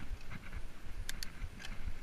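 Mountain bike rolling along a sandy trail, with a low rumble on the microphone and a few sharp clicks of the bike rattling about a second in and again near the end.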